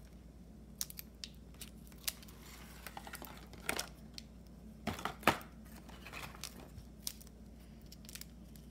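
Scissors snipping and a small plastic packet crinkling as it is cut open: scattered quiet clicks and rustles, with the sharpest snaps around five seconds in.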